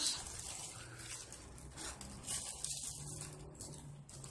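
Faint rustling of hands handling a small crocheted yarn coin purse, with a few soft ticks and a low steady hum underneath.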